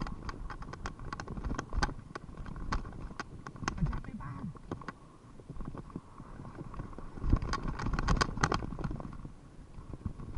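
Mountain bike riding over a dirt singletrack: irregular clicks and rattles from the bike over bumps, with rumbling tyre and trail noise, getting rougher and louder for a couple of seconds about seven seconds in.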